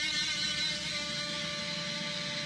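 Electric guitar with a held chord ringing out and slowly fading, no new notes picked.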